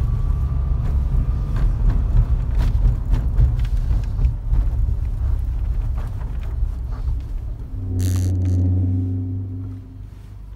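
Interior road and engine rumble of a 1988 Dodge Raider on the move, with no noises from the suspension. About eight seconds in there is a short sharp click, then a steadier engine hum for a moment before the sound drops away.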